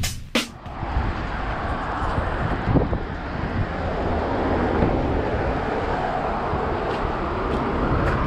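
Steady outdoor street noise with road traffic running by. In the first half second a music track's last beat hits cut off.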